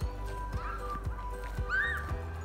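Low rumble of wind buffeting the microphone outdoors, under faint background music, with two brief high-pitched cries about half a second and a second and a half in.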